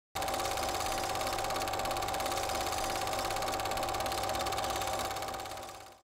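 A steady buzz with one held mid-pitched tone over a hiss, starting suddenly just after the last words and fading out near the end.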